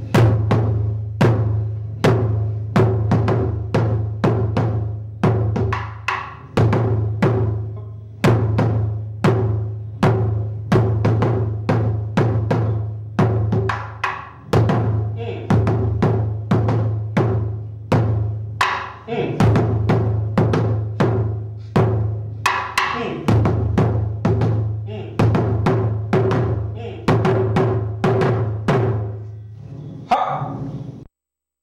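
Taiko drum struck with wooden bachi sticks, a few strokes a second in a continuous rhythmic run with hands alternating, each stroke a sharp hit over a deep ringing boom. The run breaks off briefly a few times and picks up again.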